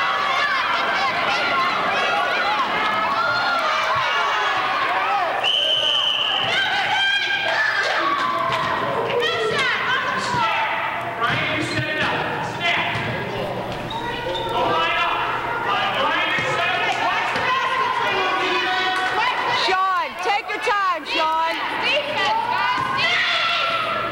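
A basketball dribbling on a hardwood gym floor amid many voices talking and shouting, echoing in the hall. A short, steady, high referee's-whistle blast sounds about six seconds in.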